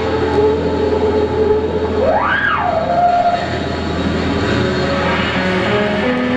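A live rock band's electric guitar and bass playing a loud, distorted drone of held notes. About two seconds in, one note slides up and back down.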